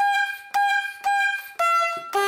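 1908 Testophone four-horn bulb horn sounding a string of short horn notes about twice a second as its rubber bulb is squeezed. Each note starts sharply and fades, and the notes step between a few different pitches.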